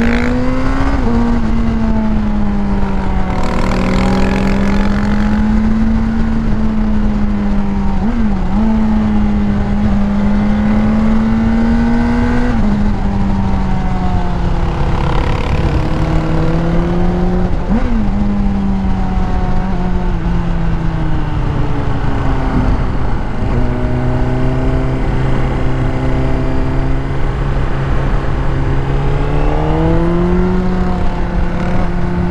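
Honda CBR600RR inline-four running through a decatted Yoshimura exhaust at steady cruising revs, with wind rushing past. The engine note dips briefly and recovers twice as the throttle is eased and reopened. It steps down to a lower pitch for several seconds, then rises again near the end.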